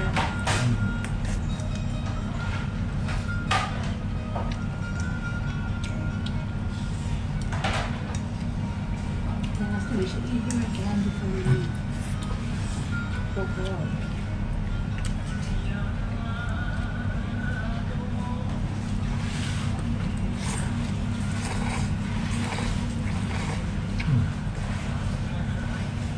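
Restaurant dining-room ambience: a steady low hum, with occasional short clicks and clinks of chopsticks against bowls, over faint background music and voices.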